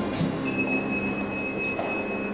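Lift in a building lobby: a steady high-pitched tone starts about half a second in and holds over a background hiss as the lift doors stand open.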